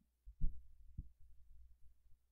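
A few dull, low thumps over a steady low hum, the two strongest about half a second and a second in.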